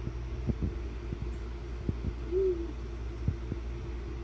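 A steady low hum with a scattering of soft, low knocks. About halfway through comes a brief low tone that rises and falls, like a short hoot.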